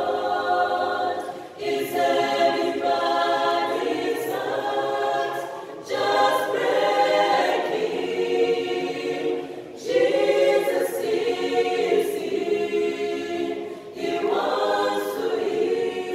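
Mixed choir of men's and women's voices singing a cappella, in sung phrases of about four seconds with brief breaks between them.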